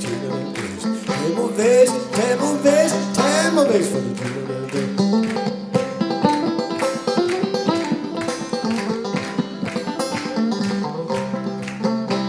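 Open-back banjo played clawhammer (frailing) style in a steady, even rhythm of strokes over a held low note, with a man singing along over the first few seconds.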